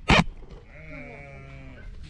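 A loud thump or knock right at the start, then a sheep bleating once, one long wavering call lasting over a second.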